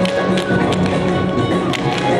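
Recital music playing, with several irregular sharp clicks of small children's tap shoes striking the stage floor.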